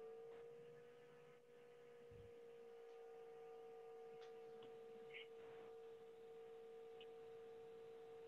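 Near silence with a faint, steady electronic hum: a single tone that rises a little in pitch in the first second and then holds level, with a few faint ticks.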